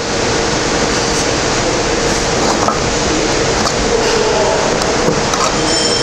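Steady rushing noise in a car repair bay, even throughout, with a few faint clicks.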